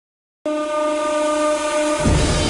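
A single steady horn-like tone with overtones, starting suddenly about half a second in and held unchanged.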